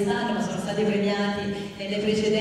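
A woman singing into a hand-held microphone, holding long notes that step from pitch to pitch, with a short breath break near the end.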